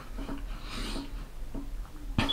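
A man breathing hard through a set of push-ups, with one exhale about a second in.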